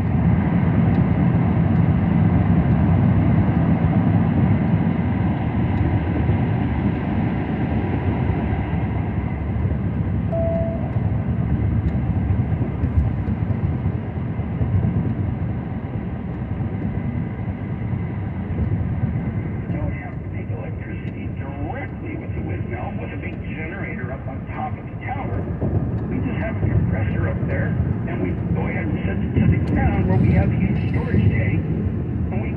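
Car road and tyre noise heard from inside the cabin while driving through a road tunnel, loud and steady and heaviest in the first few seconds. A talking voice runs faintly underneath and becomes clearer in the second half.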